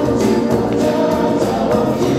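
Andean folk band playing live: voices singing together over wind instruments and a steady, even beat.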